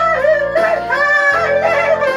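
A man singing a Korean ballad into a karaoke microphone over a karaoke backing track, holding and bending long notes. He sings it in C, a whole step above the original B-flat.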